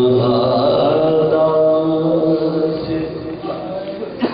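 Men's voices chanting a marsiya in soz style, holding one long drawn-out note that fades out about three seconds in.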